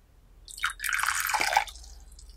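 Liquid poured in a thin stream from a glass pitcher into a porcelain tea bowl, splashing for about a second before it stops.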